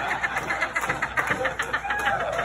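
A group of men laughing hard in rapid ha-ha pulses, after the punchline of a story told over a microphone.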